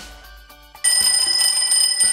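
A twin-bell mechanical alarm clock ringing. The loud, high ring starts about a second in and cuts off suddenly about a second and a half later.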